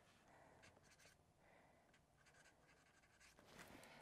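Faint scratching of an erasable highlighter's eraser tip drawn over paper in several short strokes while lettering on a highlighted patch of a planner page.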